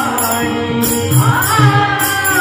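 A male voice singing a Marathi devotional bhajan, the melody gliding upward about halfway through, over low hand-drum strokes and the jingling of a khanjeri, a small frame drum with jingles.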